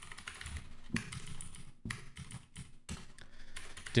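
Typing on a computer keyboard: an uneven run of key clicks.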